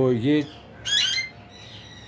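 An Alexandrine parakeet gives one short squawk about a second in, rising in pitch.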